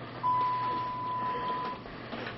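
A single steady electronic beep, one even tone held for about a second and a half, over low hiss and hum.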